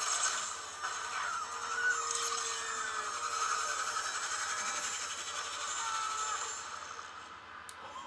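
Music from an animated film trailer's soundtrack, sustained tones, easing down near the end as the trailer reaches its title card.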